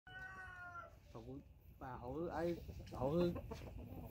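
A rooster gives a short, steady call near the start, followed by a person speaking and laughing in a few short bursts.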